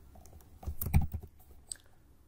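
Keystrokes on a computer keyboard: a quick cluster of key presses about a second in, then a single key click near the end.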